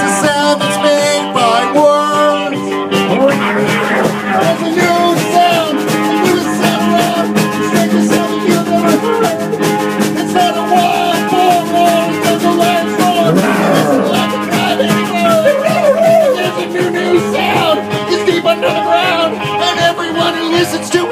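Live rock band playing between sung verses: electric guitars, drums and keyboard, with a wavering melodic lead line over held chords.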